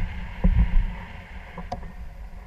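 Airflow of a paraglider in flight buffeting the camera's microphone: an uneven low rumble, with a stronger gust about half a second in.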